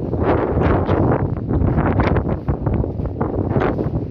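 Loud wind buffeting the camera microphone, a gusty, uneven rumble.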